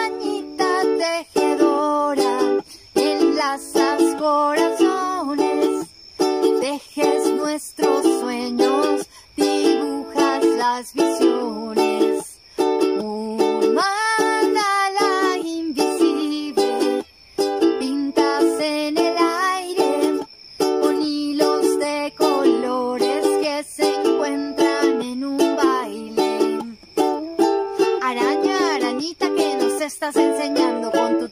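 Ukulele playing a song in a steady, repeating rhythm, its phrases broken by short pauses.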